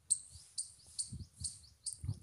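Short high-pitched chirps repeating about twice a second, with a few brief pitch glides between them: a small bird calling.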